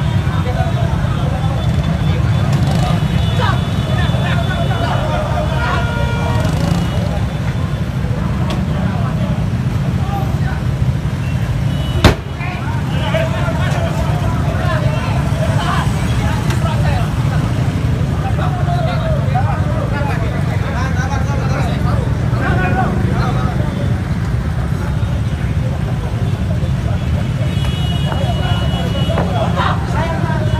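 Busy street traffic: a steady low rumble of motorcycle and car engines, with people's voices around it. There is one sharp knock about twelve seconds in.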